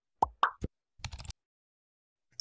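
Two quick pop sound effects in close succession, each sweeping upward in pitch, with a soft thud after them; then faint light clicks about a second in.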